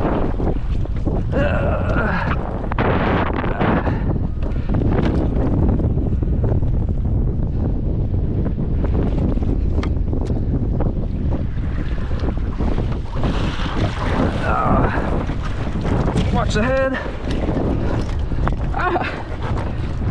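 Wind buffeting the microphone and water sloshing around a capsized Laser dinghy as it is being righted. A few short vocal sounds break through.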